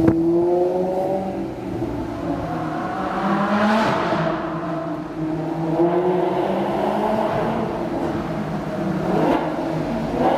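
Maserati GranCabrio MC Stradale's 4.7-litre V8 pulling hard, heard from the cabin. Its note climbs and drops back several times as the car accelerates through the gears.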